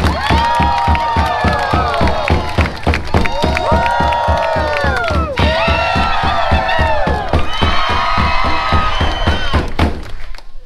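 Drums beaten in a fast, steady rhythm of about four beats a second, with several voices giving long, rising-and-falling shouted calls over the beat.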